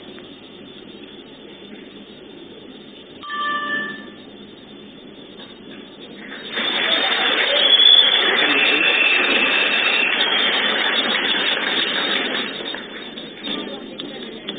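Jio Phone giving a short electronic alert tone about three seconds in as its long-press-5 emergency distress feature triggers. It is followed by a loud, even wash of noise lasting about six seconds and loudest near eight seconds in.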